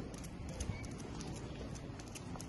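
Footsteps of a leashed dog and its walker on stone paving: a quick, irregular run of light clicks and taps.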